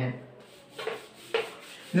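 Marker writing being wiped off a whiteboard: two short rubbing strokes across the board's surface.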